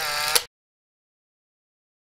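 A short ringing sound with several steady pitches and a few clicks cuts off abruptly about half a second in, leaving dead silence with no sound at all.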